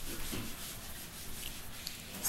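Whiteboard eraser rubbing across a whiteboard, wiping off marker writing: a steady, dry rubbing hiss.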